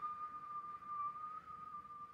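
A man whistling a single high note, held steady, with a faint overtone above it.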